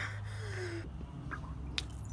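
A woman's short, falling moan of acted pain, then a faint click near the end.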